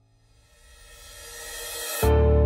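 A rising whoosh, a noise swell that grows steadily louder and brighter and cuts off suddenly at the end, leading into the title music.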